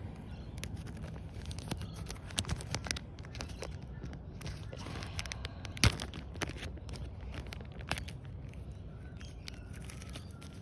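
Crinkling of a small plastic seed bag and rustling of loose compost as hands work in it, with scattered small clicks and one sharp click a little before six seconds in.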